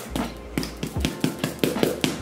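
A quick, uneven run of sharp taps, about five or six a second.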